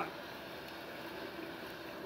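Steady low background hiss of room tone, with no distinct sound event.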